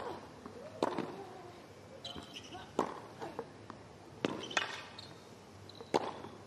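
Tennis rally on a hard court: a series of sharp racket-on-ball strikes and bounces, about one every second or so, with short high shoe squeaks between some of them.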